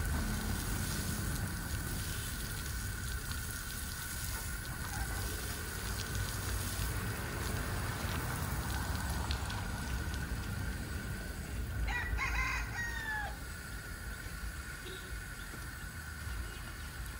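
A rooster crows once, about twelve seconds in: a pitched call of a little over a second that drops in pitch at the end. Under it runs a steady hiss from the outdoor shower's spray with a low rumble.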